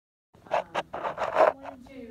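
A person's voice after a brief silence: a few short, loud, breathy bursts, then a quieter voice whose pitch bends up and down.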